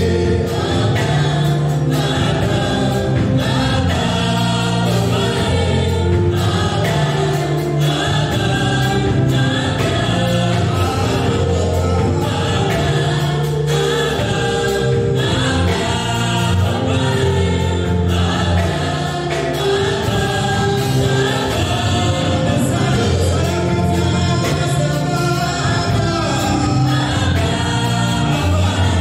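Live gospel worship music: a group of singers in harmony, backed by a band with keyboard and drums, playing steadily.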